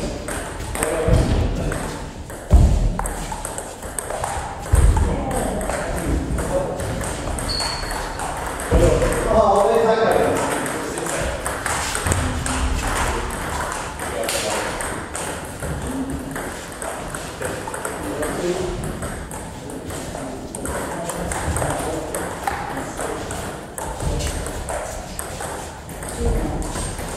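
Table tennis ball clicking back and forth between bats and table in rallies, with two louder knocks a few seconds in and voices talking in the background.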